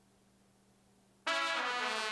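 After about a second of near silence, a sampled brass note from Reason's NNXT sampler comes in loud and is held. It begins bending down in pitch at the end: a trumpet fall.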